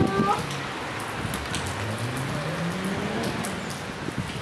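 Steady rain hiss with drops pattering on the street and umbrellas. A voice is heard briefly at the start, and a low sound rises steadily in pitch for about two seconds in the middle.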